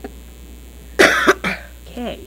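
A cough close to a microphone about a second in, a short harsh burst followed by a smaller one, over a steady low mains hum.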